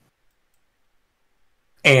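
Dead silence from a gated microphone during a pause, then a man's voice starts speaking near the end.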